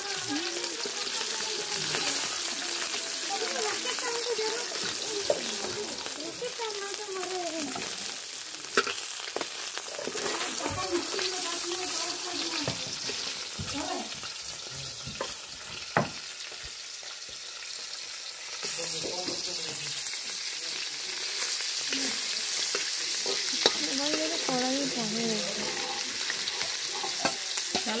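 Tilapia pieces frying in oil in an aluminium wok, with a steady sizzle. A metal spatula stirs and scrapes against the pan, with a few sharp clinks.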